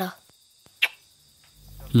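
Faint, steady high-pitched chirring of crickets in the background. A child's line of speech ends right at the start, and a low hum swells in near the end.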